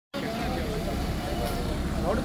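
A JCB road roller's diesel engine idling with a steady low rumble, with people talking faintly in the background.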